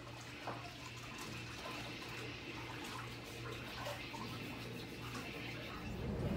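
Faint running water from a pedicure foot spa, over a low hum that pulses about twice a second, with a few small knocks.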